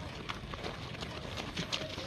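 Footfalls of a group of people doing high-knee drill in place on a dirt ground: many short shoe strikes, several a second and not in step.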